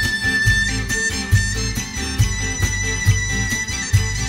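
Folk band playing live: acoustic guitars over a steady drum beat about two a second, with a lead instrument holding long high notes above.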